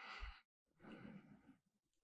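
Near silence, with two faint breaths into the microphone, one at the start and one about a second in.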